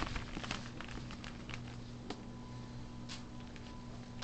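Soft, scattered rustles and clicks of a plastic zip-top bag and a damp paper towel being handled close to the microphone, over a steady low hum.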